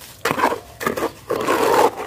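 Steel trowel stirring and scraping a thin cement-and-fine-sand slurry around a bucket, about three wet, scraping strokes. The mix is being worked to a slightly runny consistency for a spatter coat.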